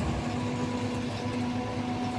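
Caterpillar hydraulic excavator running steadily as its bucket digs into dry earth, its engine and hydraulics giving a steady hum with a held tone over a low rumble.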